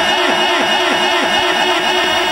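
The singer's last held note ringing on through a PA system's heavy echo effect: a steady tone repeating with a fast, swirling sweep after the voice itself has stopped.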